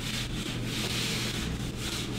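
Whiteboard eraser rubbing back and forth across a whiteboard: a scrubbing hiss in quick repeated strokes, about two or three a second.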